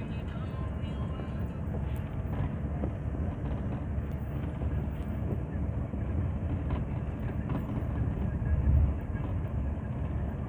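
Steady low road and engine rumble heard from inside a moving vehicle, with a short louder low bump near the end.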